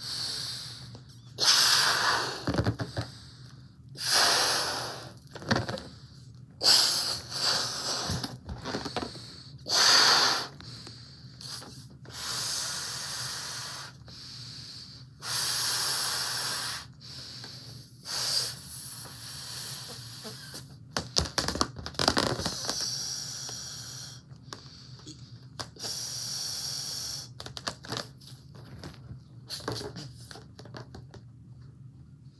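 A latex balloon being blown up by mouth: about a dozen long breaths are blown into it, each one to two seconds, with short pauses for breath between them.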